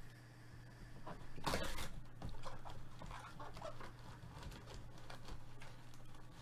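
Foil trading-card packs rustling and crinkling as they are handled and drawn out of a cardboard hobby box, with a louder rustle about a second and a half in and lighter crackles after it.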